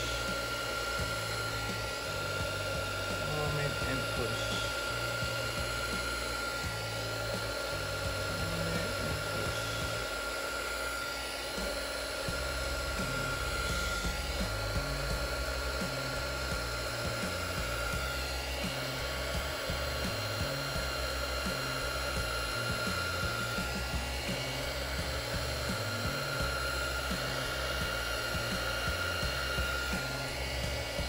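Heat gun running on its low setting: a steady blowing whir with a thin high whine, blowing freshly poured white resin across a mold to push it up into a wave.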